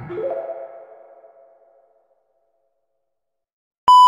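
A short electronic jingle of a few rising notes that fades away over about two seconds, then silence. Just before the end, a loud, steady, high test-tone beep comes in with the TV colour-bars test pattern.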